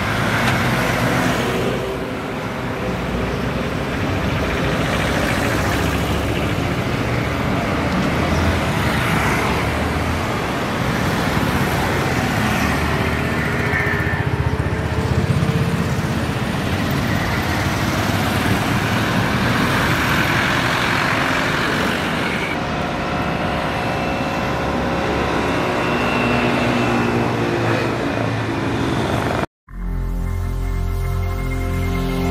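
Road traffic passing close by: a small truck, cars and motorcycles with engines running and tyres on the road, steady throughout. It cuts off suddenly just before the end.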